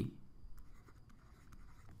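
Faint scratching and light tapping of a stylus writing on a tablet surface.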